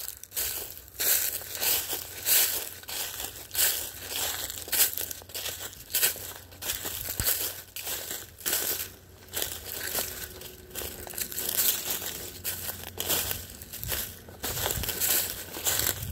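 Footsteps crunching and crackling through dry fallen leaf litter at a steady walking pace.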